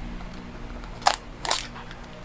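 Plastic food packaging crackling twice in quick succession as it is handled, over a low steady hum.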